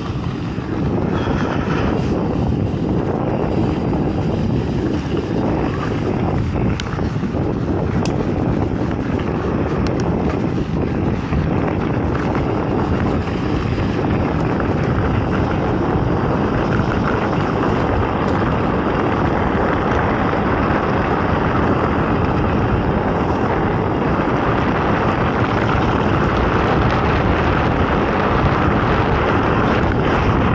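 Wind buffeting the microphone of a camera mounted on a mountain bike, mixed with the tyres rolling over a gravel trail: a steady rumbling noise with a few faint clicks, growing a little louder in the second half.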